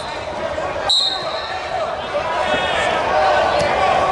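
A referee's whistle gives one short blast about a second in, over background voices and thuds on the wrestling mat.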